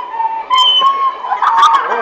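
Flutes playing a simple melody in held notes. About halfway through, voices chatter loudly over the playing.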